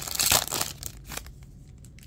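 Wrapper of a Topps Chrome baseball card pack crinkling and tearing as it is opened by hand. The crackling is loudest in the first half-second, then thins to a few faint crinkles.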